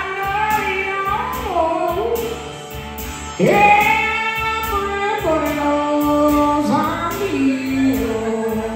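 Electric blues performance: a wordless lead line of long held notes that bend and slide, with a sharp upward scoop about halfway through, over a steady band accompaniment.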